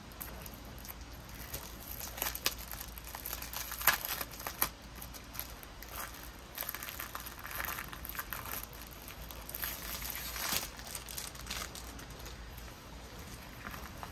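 Clear plastic packaging of a rolled diamond-painting kit crinkling and rustling as it is handled and opened, with a few sharper crackles.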